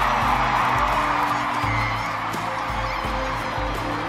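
Huge stadium crowd cheering and screaming in a sustained ovation, over low held notes of music; the cheering eases a little after about two seconds.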